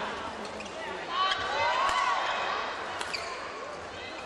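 Badminton rally: a few sharp racket hits on the shuttlecock, with shoes squeaking on the court mat, loudest about a second in, over steady arena crowd noise.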